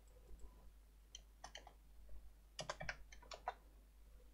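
Faint computer keyboard typing: a few single keystrokes, then a quick run of about six keys near the end, as a value is typed in.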